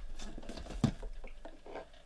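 Scratchy rustling and light taps of cardboard boxes being handled on a desk, with one sharper knock a little under a second in.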